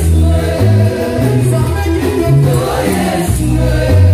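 Church choir singing an upbeat gospel song, with a prominent bass line stepping from note to note underneath.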